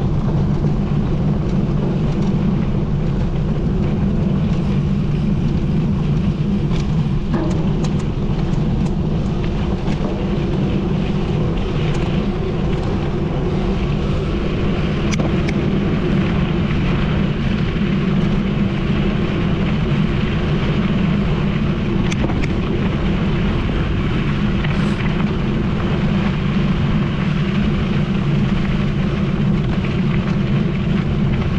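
Wind rushing over an action camera's microphone on a mountain bike at about 30 km/h, mixed with the tyres rolling on a gravel road, with a few faint ticks of gravel.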